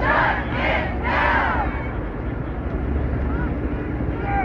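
A crowd of protesters shouting together in unison, three loud shouts in the first second and a half, over a steady low rumble.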